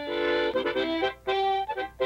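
Harmonica playing a tune in chords, mostly short notes with a few held ones.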